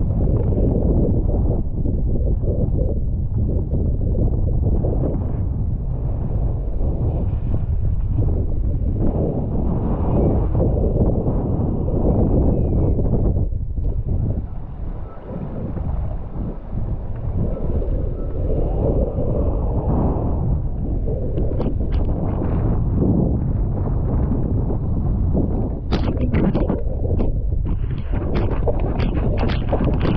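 Strong wind buffeting the camera microphone, a loud continuous rumble, over the hiss and splash of choppy water moving past a foil board. From about four seconds before the end, sharper, brighter splashes of spray come in.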